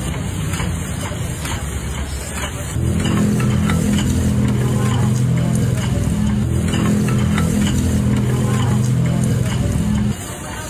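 A steady low motor hum starts about three seconds in and cuts off suddenly at the end, with light clicks and clinks over it and voices in the background.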